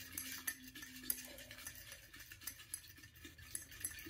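Folded paper prompt slips rattling inside a glass clip-top jar as it is shaken: a run of faint, quick light ticks and rustles.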